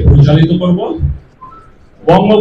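A man speaking Bengali through a handheld microphone for about a second, then a pause in which a faint, brief whistle-like tone sounds.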